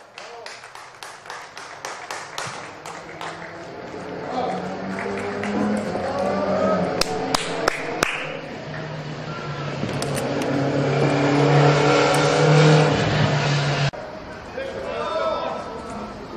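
Claps and shouts of players and spectators celebrating a goal, swelling into loud, sustained cheering and yelling that cuts off abruptly about two seconds before the end.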